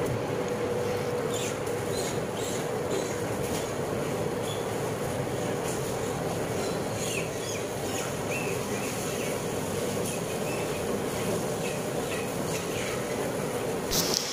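Gas burner under a large scalding pot, fed from an LPG tank, running with a steady rushing noise and a faint hum, with a few faint knocks.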